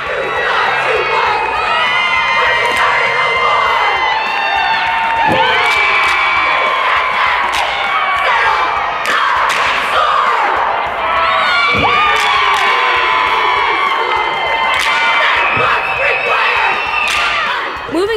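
A high school competitive cheer squad of girls shouting a cheer in unison, many voices yelling together, with a couple of sharp claps or thumps along the way.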